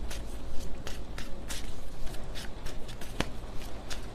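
A tarot deck being shuffled and handled: a run of short, irregular card flicks and rustles, with one sharper click about three seconds in.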